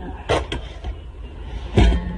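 Two brief handling knocks as a stainless steel bowl is moved: a light click about a third of a second in and a heavier thump near the end.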